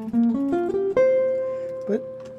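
1967 Gibson ES-125C hollow-body archtop guitar playing a quick rising run of single notes, then one note left ringing and slowly dying away. Its tone is somewhat dull, which the player puts down to the guitar's original bridge.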